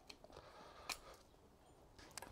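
Near silence with a few faint clicks, the clearest about a second in, from a hand-held metal garlic press squeezing garlic cloves.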